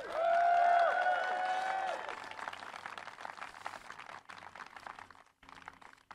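Outdoor crowd cheering with whoops and applauding; the cheering stops about two seconds in and the clapping thins out and fades away over the next few seconds.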